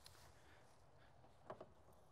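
Near silence: faint steady background hum, with one brief faint sound about one and a half seconds in.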